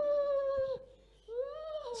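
A woman's high-pitched wailing cry, in two drawn-out moans: the first held steady then falling away, the second rising and falling again after a short breath.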